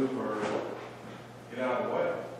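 Indistinct speech from people around a meeting table in a large room, in two short stretches at the start and near the end. About half a second in there is a brief noise, like something being moved on or against furniture.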